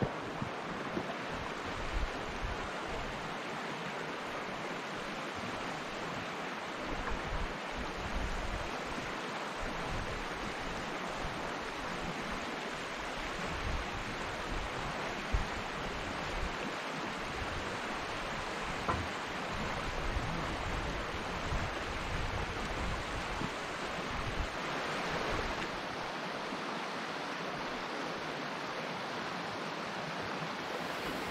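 River water rushing steadily over rocks below a dam, with gusts of wind buffeting the microphone.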